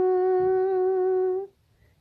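A woman's unaccompanied voice holds one long, steady note at the drawn-out end of a sung line in a slow Romanian lament. It cuts off about one and a half seconds in.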